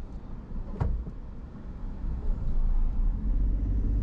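Car cabin road noise: a low engine and tyre rumble while driving slowly, with one sharp knock about a second in. The rumble grows louder near the end.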